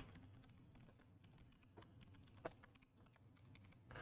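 Faint typing on a computer keyboard: scattered light key clicks, one a little louder about two and a half seconds in.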